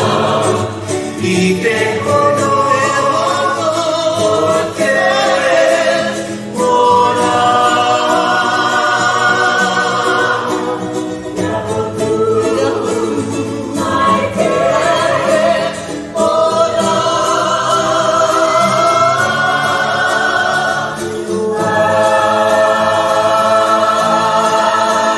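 Polynesian choral song: many voices singing together in harmony, in phrases a few seconds long with short breaks between.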